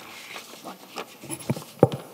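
Several short handling knocks and rustles from a table microphone being taken hold of and moved, with the sharpest knock near the end.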